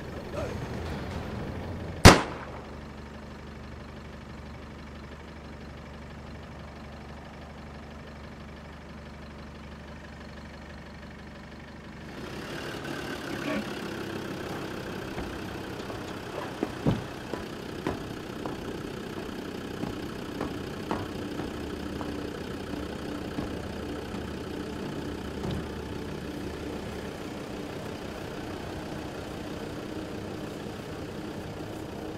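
A single rifle shot about two seconds in, sharp and much the loudest sound, followed by a low steady drone. From about twelve seconds, a vehicle engine idling steadily with a few scattered knocks.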